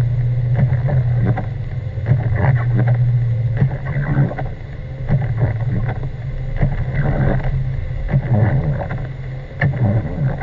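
Car driving on a snow-covered road, heard from inside: a steady low engine and road drone, with irregular short knocks and swishes from the tyres over snow and slush.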